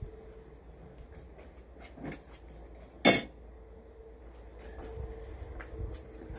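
Metal hole saw parts clinking as they are handled while one hole saw is swapped for another, with one sharp clink about three seconds in and a fainter one a second earlier. A faint steady hum and low rumble run underneath.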